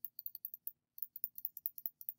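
Rapid, faint high clicks, about nine a second, with a short pause a little before the middle: computer mouse clicking as the eraser is dabbed over the image.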